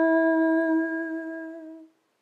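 An unaccompanied woman's voice holding one long sung note, steady in pitch, that fades away and stops just before the end.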